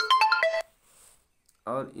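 Smartphone ringtone for an incoming call: a quick electronic melody of clear notes that cuts off suddenly about half a second in. Near the end, a man's voice starts again.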